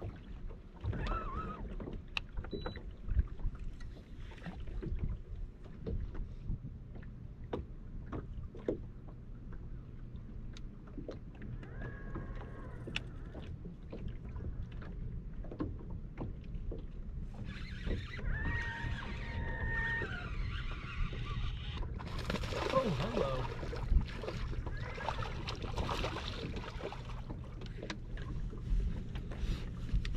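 A bass boat sits on open water with a steady low hum and water lapping at the hull. Scattered small clicks and knocks come from the rod, reel and deck, and there is a busier, louder stretch a little past the middle.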